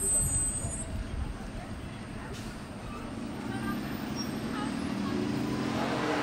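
Low outdoor traffic rumble, with a murmur of voices building in the second half.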